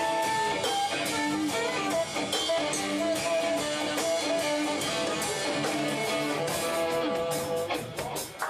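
Live jazz-fusion band playing an instrumental jam: electric guitar over bass guitar and drum kit, with held notes and steady cymbal and drum hits.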